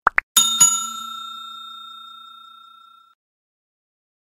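Subscribe-animation sound effects: a quick double click, then a bell ding struck twice that rings on and fades away about three seconds in.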